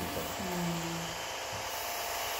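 Steady hiss of air from an airbrush spraying paint, with a brief low hum of a voice in the middle.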